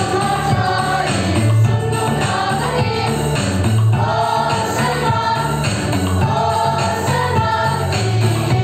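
Children's choir singing a hymn in unison over an instrumental accompaniment with a strong, moving bass line.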